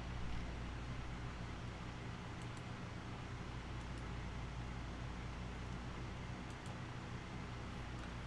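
Steady low hum and hiss of room tone, with a few faint clicks scattered through it.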